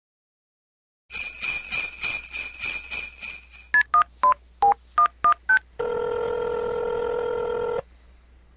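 Bells jingling in even pulses, about three a second, fading out. Then eight touch-tone (DTMF) beeps as a telephone number is keyed in. Then a steady two-second ringing tone on the line, which cuts off.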